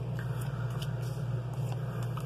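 Tarot cards being handled and laid down on a cloth: a few faint, short clicks and slides of card stock over a steady low hum.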